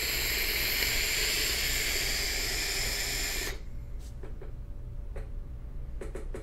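Steady hiss of a long draw on a sub-ohm vape tank, its 0.2-ohm coil firing at 90 watts through very open airflow, lasting about three and a half seconds and cutting off sharply. A softer exhale follows.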